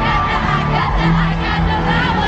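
Arena crowd screaming and singing along over loud live pop music, with fans' voices close to the phone microphone.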